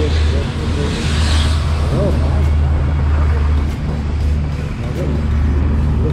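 Yamaha FZ 15 motorcycle riding steadily in traffic: a steady low engine drone under rushing wind noise on the helmet microphone.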